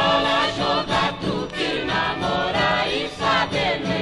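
A vocal group singing a Brazilian folk song in harmony, with orchestral accompaniment, from an old recording whose sound stops at the highest frequencies.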